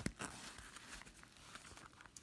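Faint handling noise from a fabric card wallet: a sharp click at the start, then soft rustling and a few light ticks as a hand works through its card slots.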